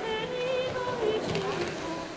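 Background music of held notes that change in steps, with a couple of faint knocks about a second and a half in.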